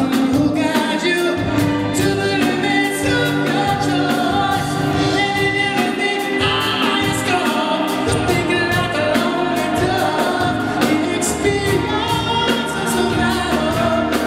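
Live band performance: a male lead vocalist sings into a microphone over a drum kit and electric bass guitar.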